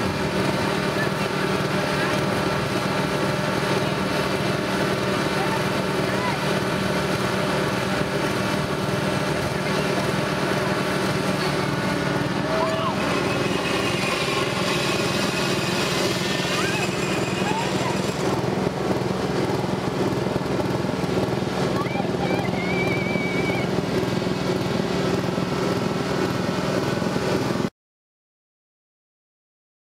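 Several gasoline lawn mower engines, walk-behind push mowers and riding mowers, running together in one steady drone.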